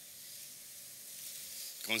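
Faint, steady high-pitched hiss of background noise in a pause between speech, with a man starting to speak near the end.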